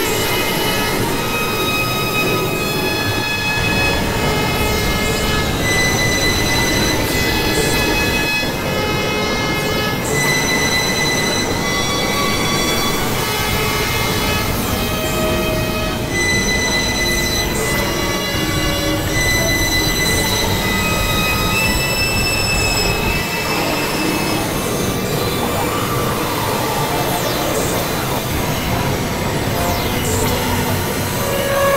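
Experimental synthesizer noise music: a dense, steady wash of noise under many thin, high held tones that shift pitch every second or so, giving a squealing, metallic drone.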